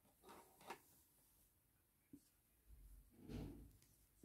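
Near silence, with a few faint soft rustles and small clicks from hands working a crochet hook through yarn.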